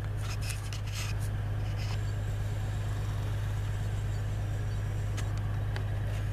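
A steady low hum, with a few light clicks in the first second.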